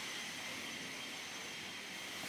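Quiet room tone: a faint, steady, even hiss with no distinct events.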